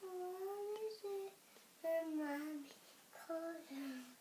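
A young boy singing a French nursery rhyme unaccompanied, in drawn-out notes broken by short pauses.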